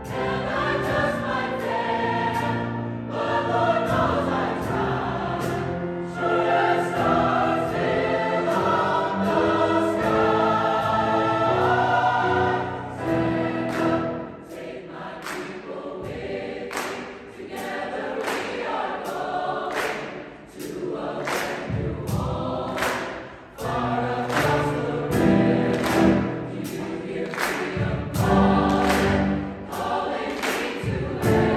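Mixed choir of women's and men's voices singing sustained chords, swelling and falling back, with quieter passages about halfway through and again about two-thirds of the way in.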